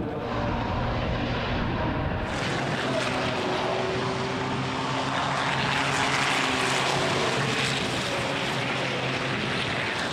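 A pack of racing trucks' turbo-diesel engines running hard as they pass together, the noise growing fuller and brighter about two seconds in.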